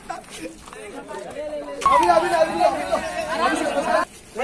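A group of men's voices chattering and calling out over one another, quieter at first, with one voice louder from about two seconds in.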